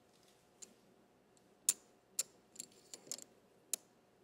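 Clay poker chips clicking against each other in a handful of sharp, irregular clicks as chips are picked up and counted out for a bet.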